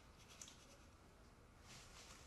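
Near silence: quiet room tone, with one faint brief noise about half a second in.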